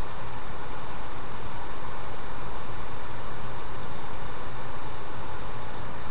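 Steady hiss with a low hum beneath it: line noise on a web-conference audio feed while the presenter's microphone is not coming through.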